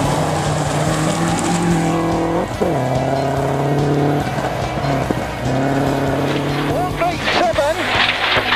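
Subaru Impreza rally car's flat-four engine running hard at high revs, its pitch climbing and then dropping sharply about two and a half seconds in, with another drop in pitch a few seconds later.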